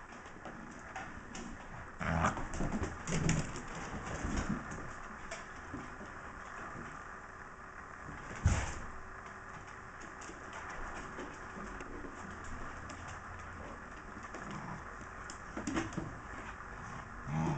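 Scottish terriers grumbling and play-growling in short low bursts as they wrestle, with one sharp thump about eight seconds in.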